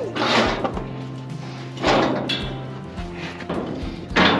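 Background music over metal clattering as the rear gate of a steel stock trailer is swung shut and latched, loudest about two seconds in.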